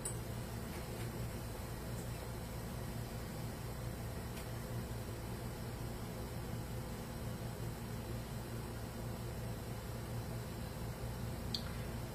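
Steady low hum and faint even hiss of room background, with a few faint ticks.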